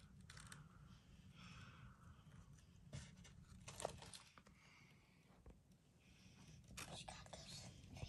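Near silence: faint room tone with a few light clicks and soft rustles from metal tongs picking silkworm cocoons out of a cardboard box.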